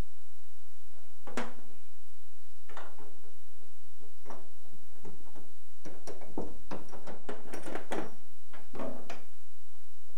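A loosened metal fuel-tank hold-down strap being handled and pulled free over a Willys MB's steel fuel tank and body tub. There are scattered light clicks and knocks of metal on metal, coming thicker in the second half.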